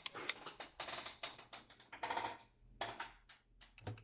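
A quick, irregular run of faint clicks and taps, thinning out toward the end.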